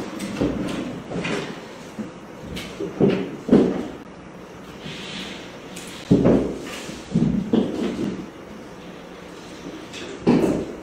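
Irregular knocks and clunks of objects being handled and set down, about seven over several seconds, over a steady low room sound.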